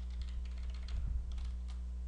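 A few light, scattered computer keyboard keystrokes while text in a field is deleted and retyped, over a steady low electrical hum.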